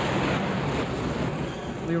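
Rushing storm sound, a steady noise with no clear pitch, loud at first and slowly dying away.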